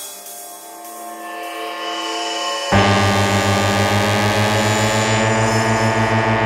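Electronic dance music in a breakdown: held synth chords build slowly, then a pulsing bass line cuts in suddenly about three seconds in under the sustained chords.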